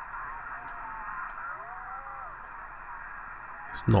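A Ham International Concorde II CB radio receiving through its speaker: a steady, narrow-band hiss with faint, garbled voices of distant stations drifting in pitch, as the clarifier knob is worked.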